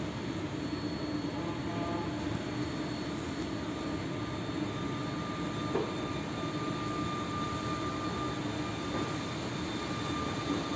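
Locomotive running steadily as it draws away from its uncoupled passenger carriages, a constant mechanical hum with a thin high whine joining about four seconds in and one short knock near six seconds.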